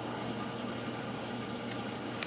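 Steady water churning and bubbling in a reef aquarium's sump plumbing beneath the tank, over a low steady hum from the pump.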